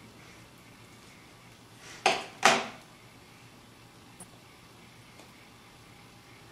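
Two quick knocks of a knife against a cutting board, about half a second apart, as an avocado is cut in half. A faint tick follows later.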